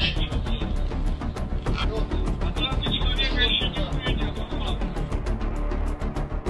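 Background music with a steady beat over a continuous deep bass.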